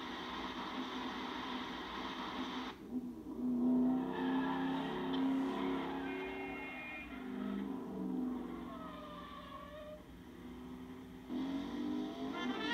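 Vehicle engine and traffic sound from a TV drama soundtrack, as a van drives fast along a city street. Brass music comes in near the end.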